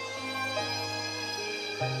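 Slow live worship band music with sustained chords held over a steady bass note; the bass and chord shift to a new pitch near the end.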